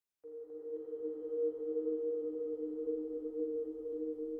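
Ambient background music begins just after the start: a steady, sustained two-note drone that holds unchanged.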